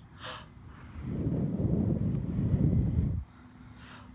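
A person blowing one steady breath through a bubble wand. The breath starts about a second in, rumbles on the microphone for about two seconds and stops abruptly.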